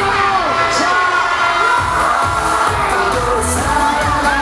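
Loud live music played over a concert PA, with pitched vocal or synth lines gliding and holding. A crowd cheers over it. The bass drops out briefly near the start and comes back in beats.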